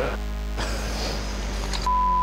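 A single steady, high electronic beep lasting about half a second near the end: a TV censor bleep dubbed over a swear word. Low background music runs underneath.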